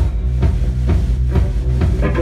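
Live rock band playing an instrumental stretch: electric guitar over bass and drums, with a steady beat of about two drum strokes a second.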